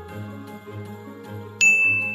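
Soft background music with a low pulsing bass, then about one and a half seconds in a single bright ding, a chime sound effect that rings on.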